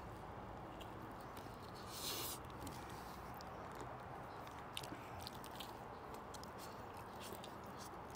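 Faint chewing and small wet mouth clicks from a man eating a burrito, over a steady low background hum, with one short hiss about two seconds in.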